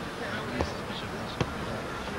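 A leather football kicked twice, two short sharp thuds under a second apart, the second louder, over distant voices on the pitch.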